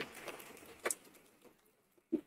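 Faint handling noise at a podium microphone: a soft rustle that fades over the first second, with one light knock about a second in, then near silence.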